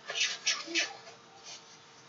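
Clothing rustling as a T-shirt is adjusted over a waist trainer: a few quick rustles in the first second, then quiet room sound.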